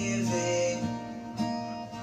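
Music: acoustic guitar strumming in an instrumental gap between the sung lines of a song.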